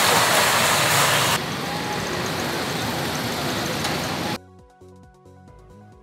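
Loud, steady rushing street noise of road traffic, which drops in level about a second and a half in and cuts off suddenly after about four and a half seconds. Faint background music follows.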